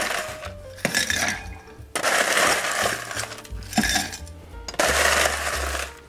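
Ice cubes dropped into a glass mixing glass in about four separate pours, clinking against the glass and each other.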